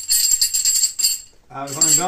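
Small metal bells and fittings on a leather buçal (cattle halter) jingling in quick strokes as it is shaken, a tinkling 'tim, tim, tim'; it stops a little after a second in.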